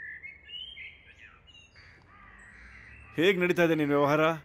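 Birds calling faintly in short, thin chirps and whistles. A man's voice then starts speaking loudly about three seconds in.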